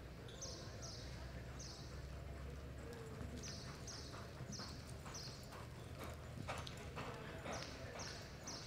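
Hoofbeats of a loping horse on soft arena dirt: an uneven run of short, muffled hits, loudest a little past the middle, over a steady low hum.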